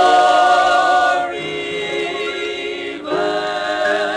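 Male gospel quartet singing sustained chords in close harmony. The held chord eases off just after a second in and swells again about three seconds in.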